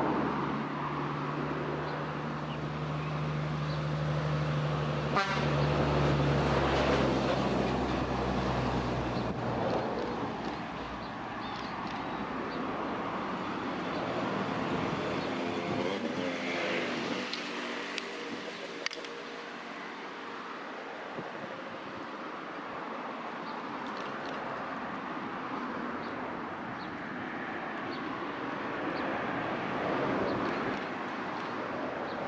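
A motor vehicle's engine running with a steady low hum that fades out about ten seconds in, over general outdoor background noise.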